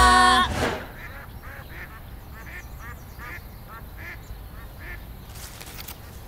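A short musical sting ends within the first half second. Then ducks quack in a quick series, about two calls a second, stopping about five seconds in.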